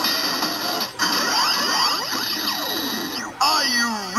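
DX Build Driver toy transformation belt playing its electronic sound effects, recorded voice and music through its small built-in speaker. Sweeping synth glides run up and down, cut out briefly just after three seconds, then return as swooping tones.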